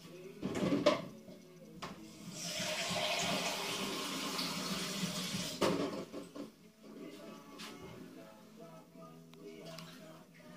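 Water rushing for about three seconds, set between knocks and clatters of kitchenware, over faint background music.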